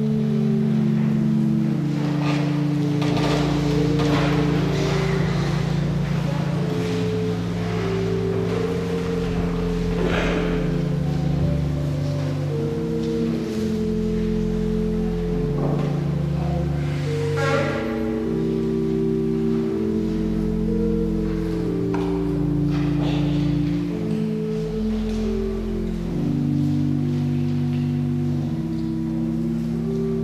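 Church organ playing slow, sustained chords that change every second or two.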